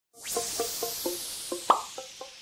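Animated-logo intro sound effect: a high whoosh, then a run of short pitched plops about four a second, the loudest shortly before the end.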